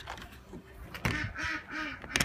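Ducks quacking, a quick run of about four quacks in the second half.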